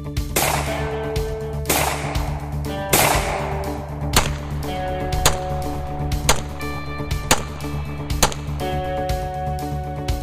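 A handgun fired repeatedly over guitar music: three shots with long ringing tails in the first three seconds, then a run of sharper cracks about a second apart.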